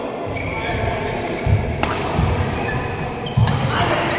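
Badminton rally in a hall: two sharp racket-on-shuttlecock smacks about a second and a half apart, with players' shoes thudding on the court floor. Voices chatter throughout.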